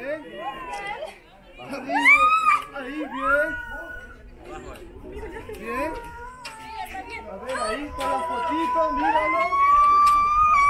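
A woman squealing in fright as she is swung out high on a rope swing: a few sharp rising squeals about two seconds in, then a long held squeal that climbs higher near the end. Other people's voices talk underneath.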